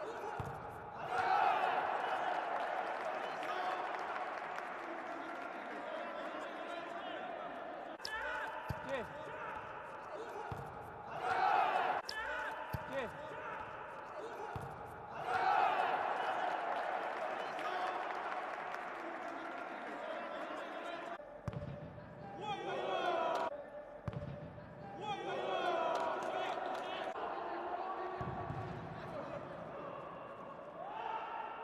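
Indoor futsal match sound: ball kicks and thuds on the court under voices in a large hall. The voices rise in louder swells about a second in and again near twelve and sixteen seconds.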